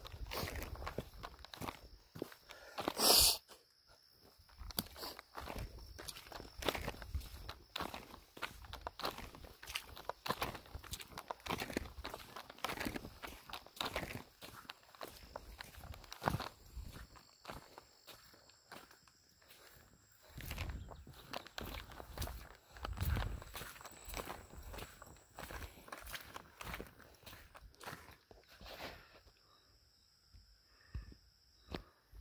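Footsteps of one person walking at a steady pace on a wet, stony dirt track, each step a short scuff or crunch of gravel and mud. One much louder, brief noise about three seconds in.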